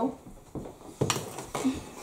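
A few light knocks of a spatula against a stainless saucepan, three short taps about half a second apart, starting about half a second in.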